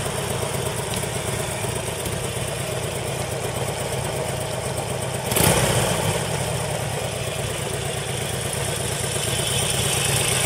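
Harley-Davidson XL1200C Sportster's air-cooled 1200 cc V-twin idling steadily, with one brief louder surge about five seconds in.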